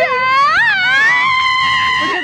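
A young woman's long, high-pitched excited scream. It swoops up in pitch over the first second, then holds one high note until it breaks off at the end.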